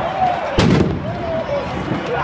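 Loud shouting voices of football players running past, with one sharp bang about half a second in.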